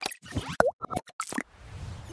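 Animated logo sting sound effects: a quick run of plops, clicks and short blips, one sliding in pitch, then a soft whooshing swell in the second half.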